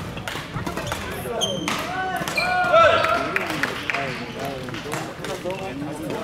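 Badminton doubles rally: sharp cracks of rackets striking the shuttlecock and short squeaks of shoes on the wooden court, with voices in the background. The loudest moment comes about three seconds in.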